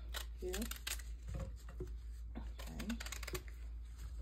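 A kitchen knife cutting pears in half, heard as a scatter of light clicks and taps as the blade goes through the fruit and meets the plate. A few soft, short voice sounds come between them.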